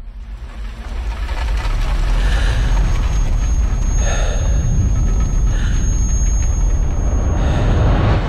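Film trailer sound design of a race car crashing: a deep rumble swells, with a crash burst about four seconds in and another shortly before six seconds. A thin high ringing tone runs through the second half.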